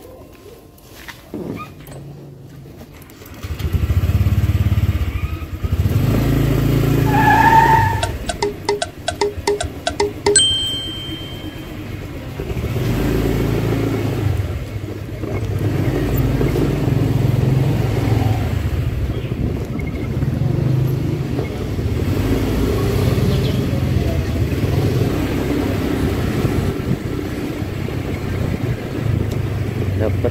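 Honda motor scooter being ridden, its engine running under rough, gusty wind noise on the handlebar-mounted phone, starting about three and a half seconds in once the scooter pulls away. A quick run of clicks and a short beep come about eight to ten seconds in.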